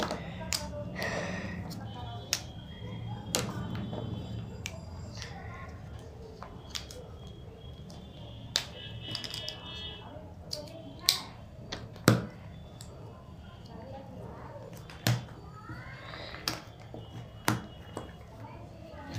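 Plastic connector-pen caps clicking as they are pressed together, about a dozen sharp clicks at irregular intervals, with a steady low hum behind them.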